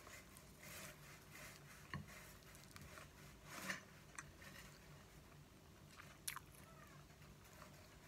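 Faint, close-miked chewing of fried instant noodles and fried egg: soft wet mouth sounds with a few sharp clicks, the sharpest about six seconds in.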